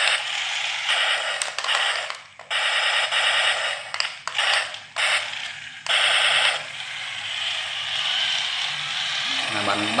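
Toy remote-control tank's electronic gunfire sound effects played through its small speaker: several bursts of rapid rattling fire in the first six seconds, then a softer steady whirring as the tank drives.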